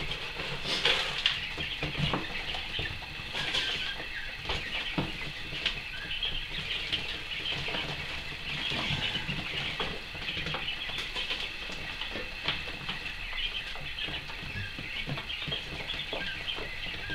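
Young coturnix quail peeping continuously in a brooder, with scraping and rustling of bedding litter as it is scooped out.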